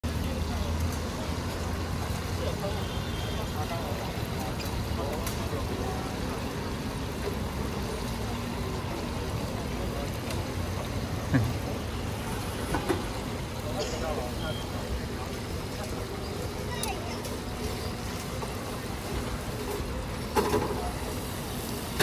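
Steady street-stall ambience: hot oil bubbling around large battered chicken cutlets in an open deep fryer, mixed with passing road traffic and background chatter. A couple of sharp clicks from the metal tongs stand out about halfway through.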